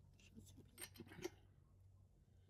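Near silence with a few faint, short metallic clicks: a socket on a breaker bar being tried on a truck's wheel lug nut.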